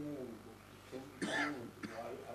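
A person coughing: a loud cough a little over a second in, followed by a shorter second cough just before the end, among brief snatches of voice.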